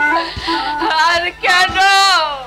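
A woman's voice in a loud, wailing sung lament: long wavering notes, the last sliding down in pitch near the end.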